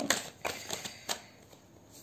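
A deck of tarot cards handled and shuffled in the hands: a quick run of sharp card clicks in the first second, then softer.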